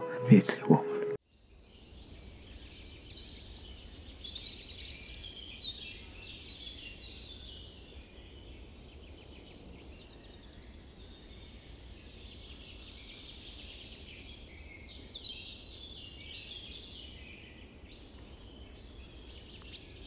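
A dense chorus of small birds chirping and singing, many short high calls overlapping, starting abruptly about a second in once the speech stops, over a faint low rumble.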